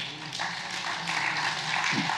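Congregation applauding, starting about half a second in and building.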